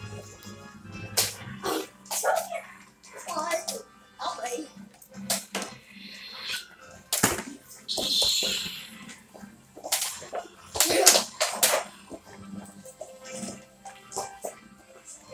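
Toy lightsabers swung and clashed in a play-fight: irregular sharp clacks and short hissing bursts, with wordless shouts and music behind.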